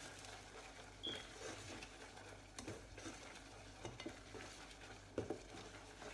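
Spoon stirring almost-cooked risotto in a saucepan: faint, wet scraping with light knocks of the spoon against the pan now and then, one a little sharper about five seconds in.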